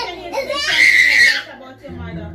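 A loud, high-pitched scream lasting under a second, starting about half a second in, among excited talking.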